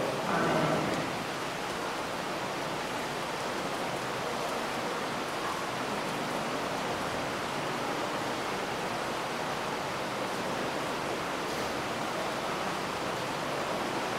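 Steady, even hiss of background noise in the room, with no speech, after a voice trails off in the first second.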